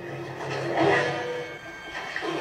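Film soundtrack playing from a television: sustained steady tones, with a louder, fuller burst of sound about a second in.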